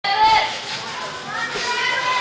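Children's high-pitched voices calling and chattering, loudest at the start.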